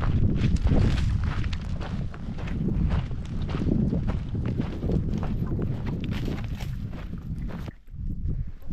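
Footsteps crunching irregularly on gravelly rock, over a steady low rumble of wind on the microphone.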